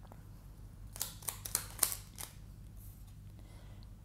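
Tarot cards being handled as a card is drawn from the deck and laid down on the table: a quick cluster of about five short, crisp card clicks between one and two seconds in, otherwise quiet.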